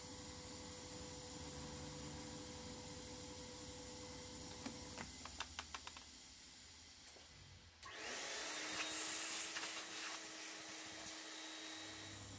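Milling machine running with a 4 mm slot drill cutting around a recess in a cast-iron axlebox: a steady hum with a run of small sharp ticks about five seconds in. Near eight seconds the sound turns louder and hissier over a steady tone.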